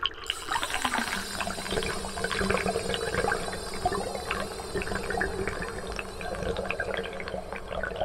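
Running water, steady and continuous, full of small splashes and gurgles, with a faint steady hum underneath.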